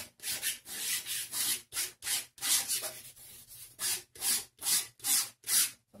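Flat paintbrush loaded with thick acrylic paint dragged across paper in a run of short brushing strokes, about two a second, with a brief pause midway.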